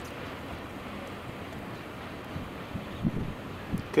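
Steady noise of a distant freight train rolling past, its double-stack cars following the diesel locomotives, with a few gusts of wind thumping on the microphone near the end.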